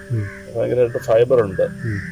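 A man talking in a steady interview voice.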